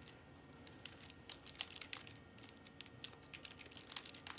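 Faint, irregular taps and clicks of fingers typing a search on a smartphone.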